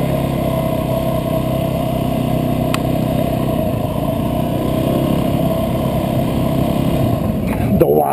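Dirt bike engine running steadily at low speed as the bike rolls slowly over gravel.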